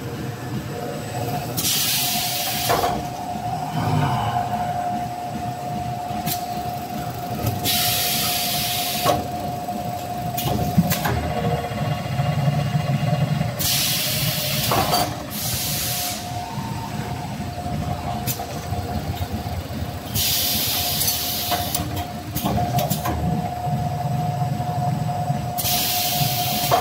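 Plastic bag-on-roll making machine running with a steady whine and low rumble, and a few sharp clicks from its mechanism. Bursts of compressed-air hiss, each lasting a second or two, come about every six seconds.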